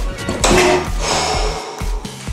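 Background music with a steady beat, with a louder, bright rushing swell starting about half a second in.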